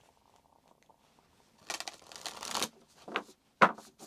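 A tarot deck being shuffled by hand: after a near-silent start, about a second of rapid papery card noise, then a shorter burst and a single sharp click near the end.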